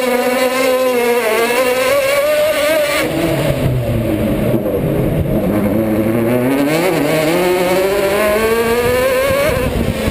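Chevrolet Cruze Súper TC2000 race car's engine heard on board at racing pace. The revs fall over the first second or so, then climb steadily for several seconds and drop again near the end.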